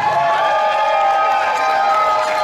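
A ring announcer's voice through the PA, holding one long drawn-out shout of the champion's name over a cheering crowd.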